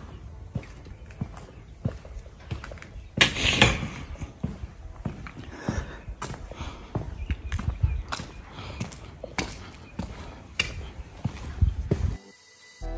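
Footsteps of a person walking at a steady pace on concrete and ground outside, with a brief louder rustle about three seconds in.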